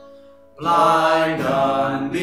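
Man singing a worship song to his own acoustic guitar strumming. A faint held note at first, then voice and guitar come in loudly about half a second in.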